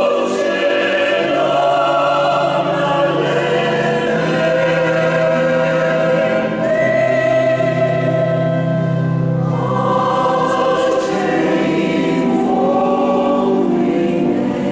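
Mixed choir of men and women singing in several parts, holding long sustained chords that change every second or two.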